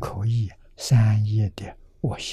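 Only speech: an elderly man lecturing in Mandarin in two short, slow phrases.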